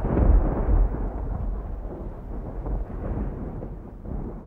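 Rolling thunder: a deep rumble, loudest in the first second, that slowly fades away.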